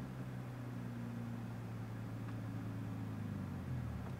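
Infiniti G35 coupe's 3.5-litre V6 engine running with a low, steady hum, heard from inside the cabin, as a learner lets out the clutch and gets the manual car moving in first gear without stalling.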